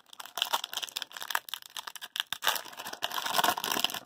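A foil hockey-card pack wrapper crinkling as it is torn open, a continuous run of small crackles and rustles.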